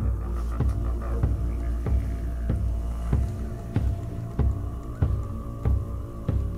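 Recorded shamanic drumming: a drum beaten in a steady, even beat of about one and a half strikes a second, over a steady low hum, as used to accompany a trance meditation.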